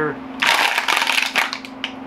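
Thin plastic half-liter water bottle crackling and crinkling as it is handled, a dense run of crackles starting about half a second in and lasting over a second. A steady low hum sits underneath.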